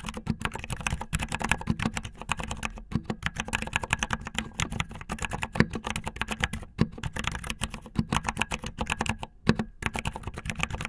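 Fast typing on a mechanical keyboard with silent brown switches: a dense, quick run of key presses, with short pauses about three seconds in and again near the end.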